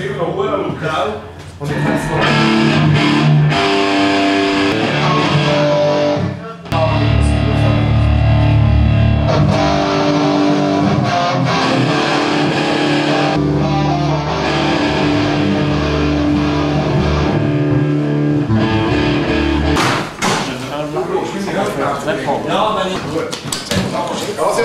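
Rock music with electric guitar, played loud over sustained chords with heavy bass; it stops about 20 seconds in and gives way to room chatter.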